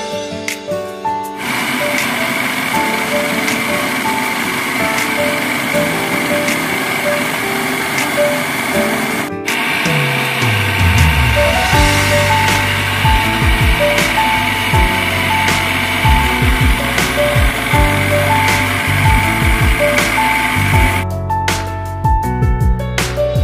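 A 700 W electric food processor running steadily as it chops red onions, over background music with a repeating melody; the motor noise stops briefly about nine seconds in and cuts off near the end.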